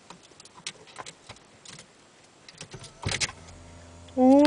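Small clicks and rattles of a car key being fiddled with in a Lexus ignition, with a cluster of louder clicks about three seconds in, after which a low steady hum starts.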